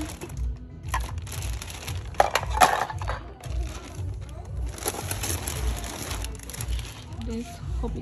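Thin plastic shopping bag rustling and crinkling as the purchases are handled, in two spells, about one to three seconds in and around five to six seconds in, with a sharp knock of plastic or glass items about two and a half seconds in. A steady low beat of background music runs underneath, and rapped vocals begin at the very end.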